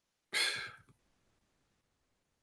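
A man's short sigh close to the microphone: one breathy exhale that starts sharply and fades within about half a second.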